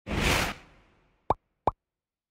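Cartoon sound effects: a short whooshing burst, then two quick plops that rise in pitch, about a third of a second apart.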